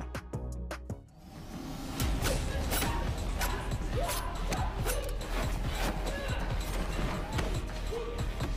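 Film fight-scene soundtrack: music over a string of sharp hits and whooshes, starting about two seconds in after a brief dip.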